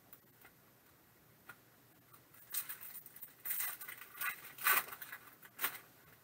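Crinkling and crackling of a foil trading-card pack wrapper and plastic card sleeves being handled. It comes in irregular bursts starting about two and a half seconds in.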